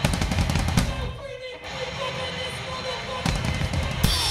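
Live hardcore band heard from the drum kit: a fast run of drum hits, then a wavering held note for about two seconds, then another burst of drum hits near the end.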